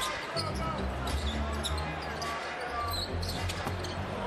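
Arena game sound from an NBA court: a basketball being dribbled over the murmur of the crowd, with low arena music underneath.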